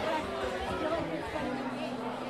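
Crowd chatter over soft acoustic guitar playing.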